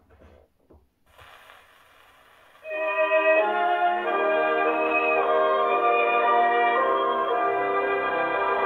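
A Columbia 78 rpm record played on an acoustic horn gramophone: a few small clicks as the needle is set down, record surface hiss in the lead-in groove from about a second in, then a violin-led light orchestra starts playing near the three-second mark, loud and thin in tone with no high treble.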